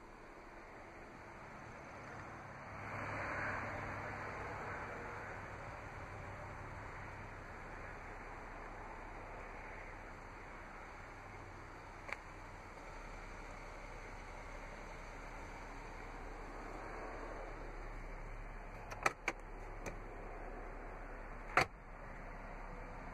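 Faint background noise with a swell of rustling a few seconds in, then a few sharp clicks, a cluster of them near the end: handling noise from a camera being moved about inside a parked car.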